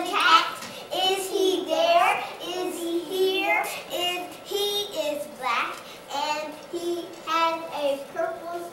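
A child singing in a high voice, a run of short sung phrases with a few held notes.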